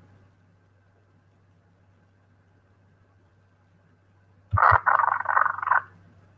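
Near silence with a steady low hum for about four and a half seconds. Then two short low clicks and a loud, garbled burst of voice over the call line, lasting about a second.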